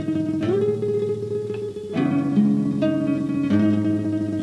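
Instrumental passage of a song: guitar strumming chords, moving to a new chord about every second and a half.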